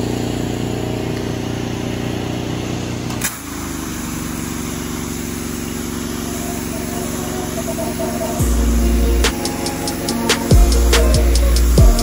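Honda gasoline engine of a pressure-washer skid running steadily while high-pressure water is sprayed on brick. After a short break a few seconds in, a hip-hop beat with heavy bass and drum hits comes in over it, about eight seconds in.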